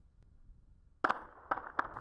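Natural sound from the street footage: about a second of near silence, then outdoor city noise comes in suddenly with three sharp cracks of distant gunfire.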